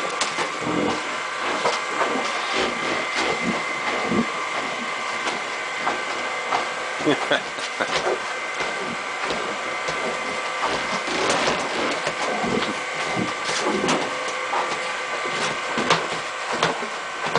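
A machine running with a steady high whine throughout, with scattered knocks and clatter over it.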